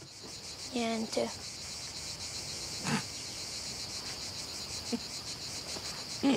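A steady high chorus of insects chirring, with a short human voice about a second in and a brief knock just before the middle.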